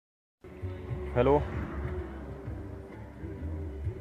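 Low, steady in-cabin hum of a moving car, starting about half a second in, with a short vocal sound about a second in.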